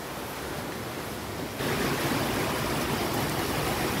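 Steady hiss of rain falling, becoming louder about one and a half seconds in.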